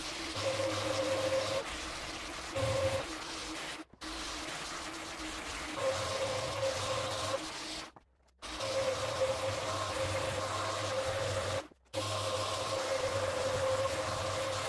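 Random orbital sander with a soft pad and 60-grit paper, hooked to a dust-extraction vacuum, running against an epoxy-coated wooden kayak hull. Its steady whir carries a hum whose tones come and go as the sander is worked over the surface. The sound cuts out abruptly three times.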